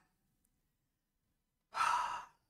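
Silence, then near the end a man's short audible breath, about half a second long.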